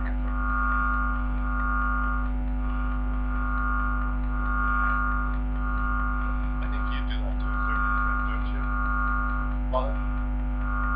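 Steady electrical mains hum and buzz from the room's sound system, a drone of several steady tones, with a higher tone that swells and fades every second or two.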